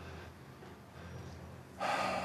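Quiet room tone, then near the end a sudden audible breath: a person's sharp intake of air.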